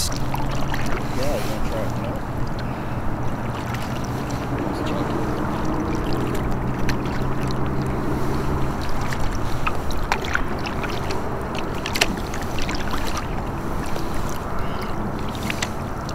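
Steady on-the-water ambience from a kayak: water moving against the hull under a low hum, with a couple of sharp knocks about ten and twelve seconds in.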